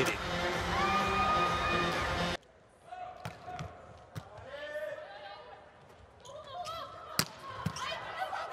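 Loud arena crowd noise with sustained tones cuts off abruptly about two and a half seconds in. A quieter hall follows, with voices and sharp hits of a volleyball being played, the loudest a single hit near the end.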